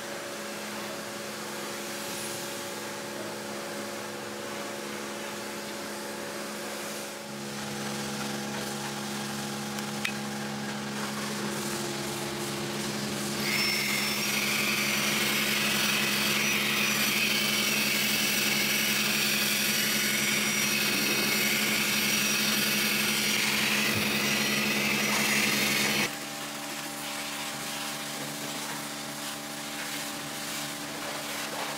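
Vacuum cleaner motor running with a steady hum. About halfway through, a loud hissing suction comes in as the hose nozzle is drawn along a car's door sill, lasting about twelve seconds before it cuts off suddenly. A single sharp click about a third of the way in.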